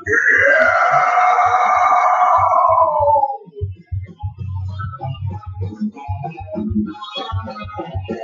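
A long, loud screamed vocal note that slides down in pitch over about three seconds, over a rock backing track. After it, the backing track's drums and guitars carry on alone.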